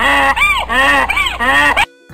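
Donkey braying: a loud bray of several rising-and-falling notes that cuts off suddenly near the end.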